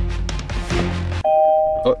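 Background music cuts off about a second in, and a Kia Ceed's dashboard warning chime sounds: a loud two-note electronic ding lasting about half a second, the "pim-pim-pim" that the driver takes to be the seatbelt reminder.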